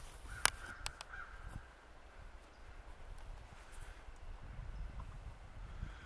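Handling noise as a camera lens is wiped clean right at the microphone: a few sharp clicks in the first second, then low rubbing and rustling.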